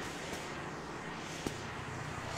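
Steady hum of road traffic on a city street, with a faint click about one and a half seconds in.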